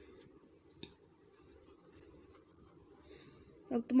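Near silence in a pause of narration: faint room noise with a soft rustling and a small click about a second in. A woman's voice starts again near the end.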